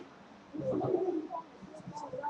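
Faint, indistinct voices murmuring in the background, loudest for about half a second shortly after the start.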